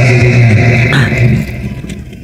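A man's voice through a microphone holding one long, low, steady vowel sound without words, which fades about one and a half seconds in.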